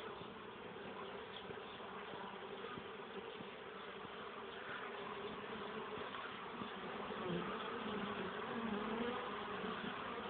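Many honeybees buzzing together in a steady hum at a colony expected to swarm, the hum growing a little louder in the last few seconds.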